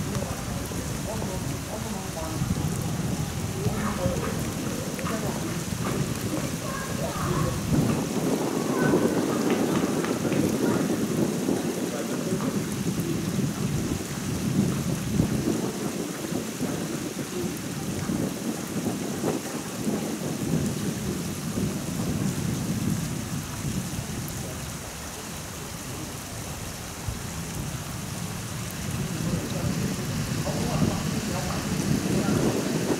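A loud, surging low rumble of outdoor noise with no clear tone, swelling about a third of the way in and easing near the end.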